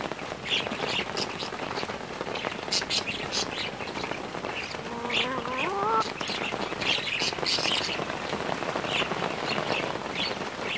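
Steady rain falling, with short high bird chirps scattered through it and one brief rising call about five seconds in.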